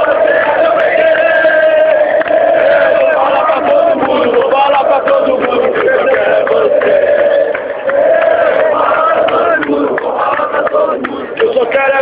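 A stadium crowd of football supporters singing a chant together, many voices holding long notes, loud and close.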